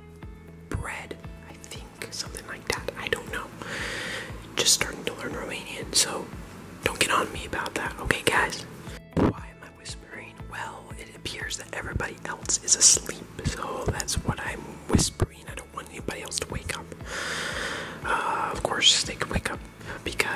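A person whispering on and off, with sharp clicks and rustles of handling and moving about between the words.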